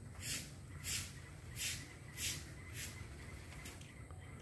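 Faint rhythmic rubbing or scraping strokes, a soft hiss about every two-thirds of a second, over a low steady outdoor background.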